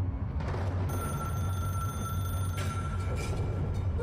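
A steady, telephone-like ringing tone from the music video's soundtrack, starting about a second in, over a low hum.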